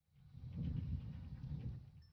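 Low, irregular handling knocks and rustle as a camcorder on a small tripod is set down on a stone floor.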